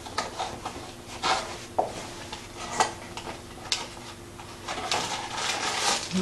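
Handling of a small cardboard blind box and its packaging, with scattered sharp clicks and taps as small vinyl toy figures are handled and set down on the table. A denser crinkling rustle of packaging comes near the end.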